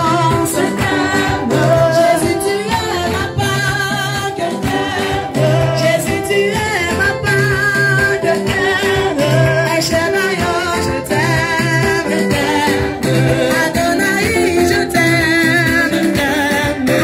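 Church congregation singing a worship song, led by a woman's voice on a microphone, with steady hand clapping.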